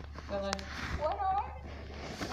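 Two short, quiet wordless vocal sounds, the second higher-pitched and wavering, with a light click between them.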